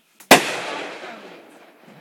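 Aerial firework shell bursting in the sky: one sharp bang about a third of a second in, followed by a long echo that fades away.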